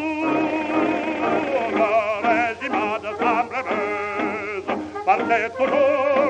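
A 1919 acoustic-era gramophone recording of an operatic tenor with orchestral accompaniment, the pitches wavering with vibrato. A long held note ends just before the passage, and the music carries on without a break.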